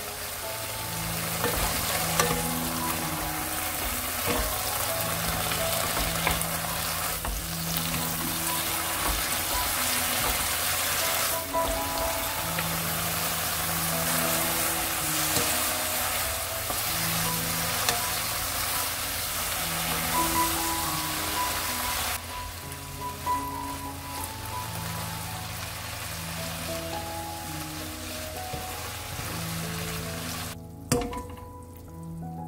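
Julienned burdock root and carrot sizzling in a soy-sauce seasoning in a pan over medium-high heat as the sauce boils down, stirred with a wooden spatula. The sizzle grows quieter about two-thirds of the way through.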